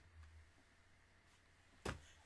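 Near silence with a faint low hum, broken near the end by one short, sharp knock.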